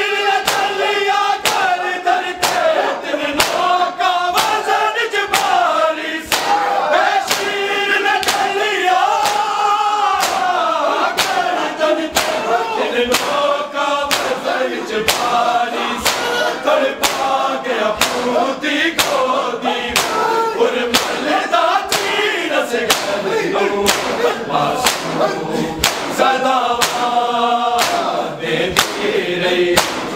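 A large group of men chanting a mournful noha in unison, punctuated by loud, regular slaps of hands striking bare chests in matam, keeping the beat.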